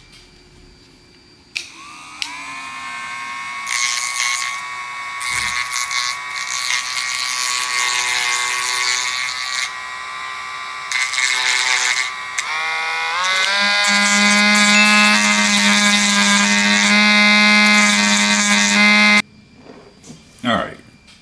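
Cordless Dremel rotary tool with a grinding stone, spinning up about a second and a half in and grinding the cut plastic edges of a GoPro Media Mod smooth, rough noise over a steady motor whine. About twelve seconds in it steps up to a higher, louder speed, then it cuts off suddenly near the end.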